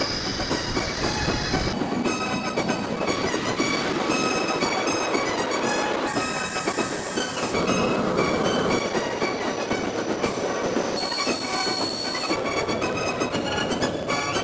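Military jet engines running loud during taxiing and takeoff runs: a dense rushing roar with a high-pitched turbine whine that comes in three times, shifting pitch each time.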